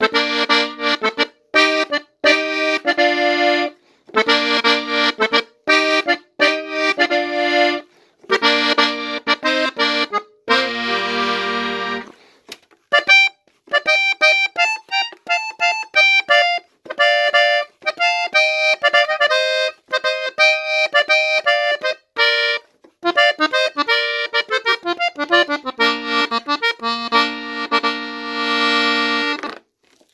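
Three-row diatonic button accordion tuned in F playing a corrido in B-flat: chord stabs with short pauses for about the first twelve seconds, then quick runs of melody notes, ending on a long held chord.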